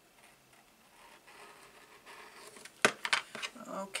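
Rotary cutter rolling across fabric on a cutting mat with a faint scratchy crunch, trimming loose threads, followed by a few sharp clicks about three seconds in as the cutter is handled.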